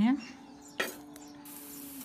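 A single clink, then, from about a second and a half in, the steady hiss of onion pakoras frying in hot oil in a kadhai, with a faint low hum underneath.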